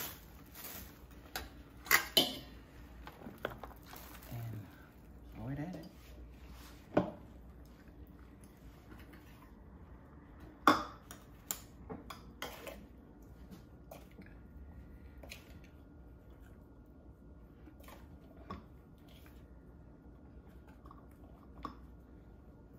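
Kitchen utensils and dishes clinking and knocking now and then against a pan. A couple of sharp, loud knocks come a couple of seconds in and again about halfway through, with only a few lighter taps after that.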